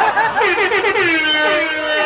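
A reggae MC's voice through the PA: a quick run of short staccato syllables, then one long held, wavering vocal note.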